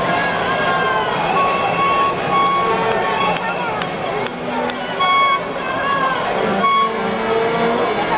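Baseball stadium crowd: many people talking and calling out at once. Repeated short, high toots from a fan's noisemaker cut through, the loudest about five seconds in and again shortly before the end.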